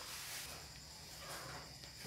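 Faint steady hum of a Mitsuba 12 V brushless motor running unloaded on the bench. It is very quiet because it is brushless and has no reduction gear, so there is little to make noise.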